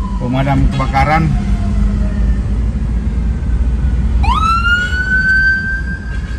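Emergency-vehicle siren wailing: a long falling tone over the first couple of seconds, then about four seconds in it sweeps up sharply and holds high. Under it runs a steady rumble of engine and road traffic.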